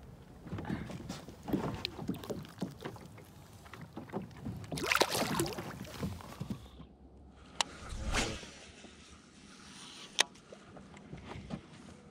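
Water lapping and sloshing against the hull of a small plastic fishing boat, with scattered light knocks and clicks. There are louder swells of water noise about five seconds in and again around eight seconds.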